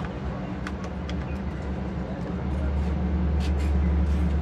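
Steady low machine hum that grows louder a little past halfway, with a few light metallic clicks from a socket wrench on the oil-pan drain plug.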